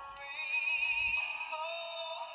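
A male singer holding sustained, wavering notes over backing music, played back through a computer's speakers and recorded off the screen, so the sound is thin with no bass.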